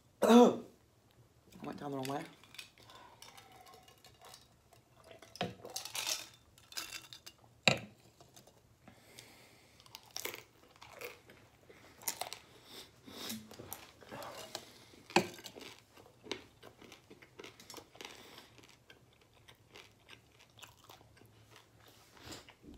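Close-miked chewing of crusty baked pasta: crunches and wet mouth smacks at irregular intervals. A short loud vocal sound opens it.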